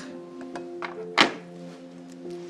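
Soft background music with steady held notes, and one sharp knock about a second in as an electric kettle is set down on the kitchen worktop.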